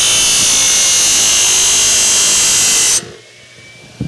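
Steel horseshoe being ground against a running belt grinder, a loud steady hiss with a high whine. About three seconds in the shoe comes off the belt and the grinding stops abruptly, leaving only the grinder's faint steady hum and whine.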